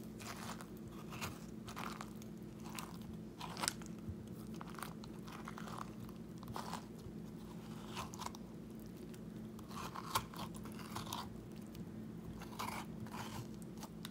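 A metal spoon scraping seeds and pulp out of a halved cantaloupe: a string of short scrapes at uneven intervals.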